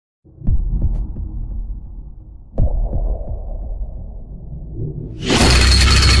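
Cinematic intro sound effects: two deep booming hits about two seconds apart, each trailing off in a low rumble, then a loud crashing, shattering burst from about five seconds in.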